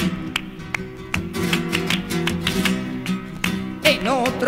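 Flamenco guitar playing an instrumental passage of a romera, with regular strums over held notes.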